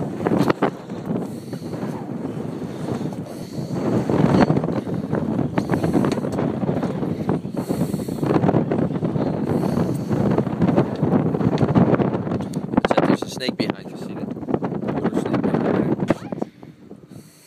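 Wind buffeting the phone's microphone in gusts, with muffled voices under it.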